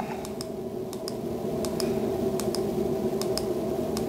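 Light, regular clicks, about three a second, from the controls of a Power-Z KM003C USB-C tester as its menu is scrolled down step by step, over a steady low hum.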